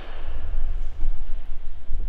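Low, uneven rumbling and bumping of handling noise on a phone's microphone as the camera is moved.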